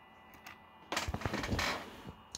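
Handling noise: a faint click, then about a second of rustling and clicking near the middle as equipment is handled close to the microphone.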